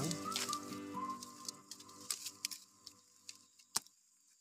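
Background music fading out over the first couple of seconds, over scattered sharp clicks and crackles from coffee shoots and leaves being snapped off a branch by hand, with one louder crack near the end.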